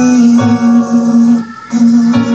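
Guitar-backed music with a long steady note held over it, breaking off briefly about one and a half seconds in.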